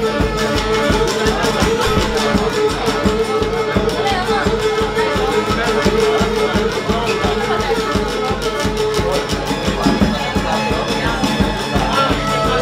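Cretan syrtos played live on bowed lyra, laouto and a large rope-tensioned drum. The lyra carries the melody over the laouto's plucked accompaniment, with a steady dance beat on the drum.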